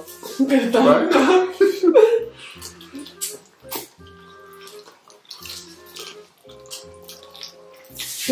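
Wet chewing and slurping of sauce-covered chicken feet, with short sharp mouth clicks scattered through, over soft background music. A loud voice sounds during the first two seconds.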